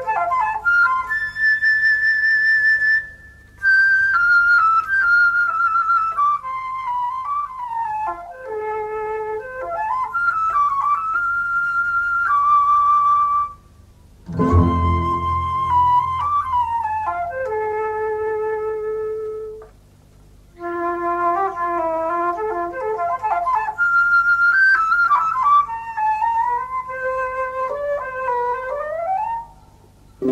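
Keroncong ensemble playing a song's instrumental introduction, a flute carrying the melody in phrases broken by three brief pauses. A deep low note comes in with the phrase about halfway through.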